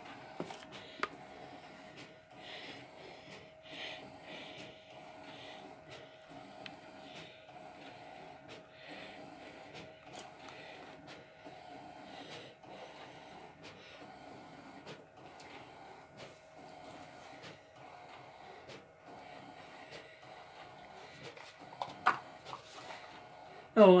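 Large-format inkjet printer printing on roll paper: a steady hum with a regular swelling whir a little more than once a second as the print head makes its passes. A sharp click near the end.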